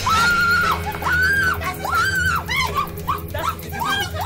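A woman's voice shrieking in a repeated high-pitched wail, three long cries followed by several shorter ones, over background music with a steady low drone.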